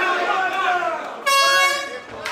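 A horn blast sounds once, a single steady high note lasting a little over half a second that starts and cuts off sharply, signalling the end of the round. Before it, shouting voices from the crowd and corners.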